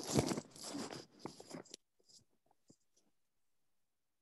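Crackling, broken-up audio from a poor video-call connection that cuts off abruptly after under two seconds, followed by a few faint clicks and then dead silence.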